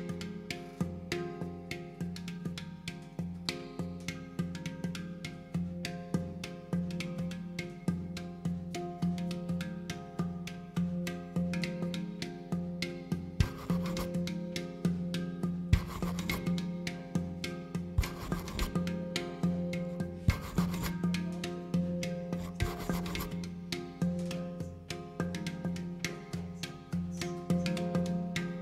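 Handpan struck by hand in a quick, even stream of ringing notes over a plucked upright double bass. From about halfway through, five short noisy scrapes come in roughly two seconds apart.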